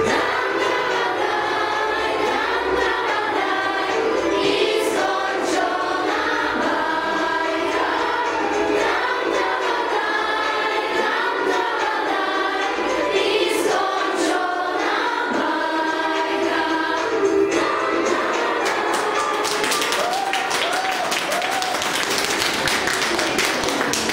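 A group of young female voices singing a song in Polish together. Near the end the singing gives way to a burst of clapping.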